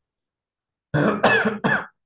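A man coughing three times in quick succession, starting about a second in.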